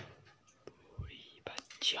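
Soft whispering with a few small clicks and a low knock, ending in a spoken word near the end.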